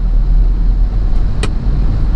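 Steady low engine and road rumble of a cab-over truck driving along, heard from inside the cab. A single sharp click about a second and a half in.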